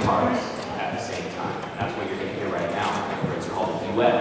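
Indistinct voices murmuring, with scattered light clicks and knocks, quieter than the clear speech on either side.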